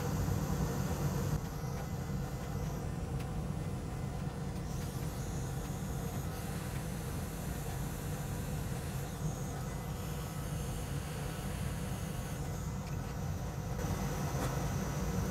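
Hot air rework station blowing steadily, a fan hum with a hiss of air, while it reflows solder under a MOSFET chip set on pre-tinned pads.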